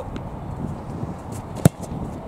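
A football struck hard with a player's foot after a short run-up: one sharp, loud thud about one and a half seconds in.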